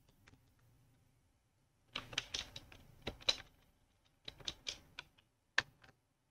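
Typing on a computer keyboard in short runs of keystrokes: a quick flurry about two seconds in, another a little past four seconds, and a last few keys near the end.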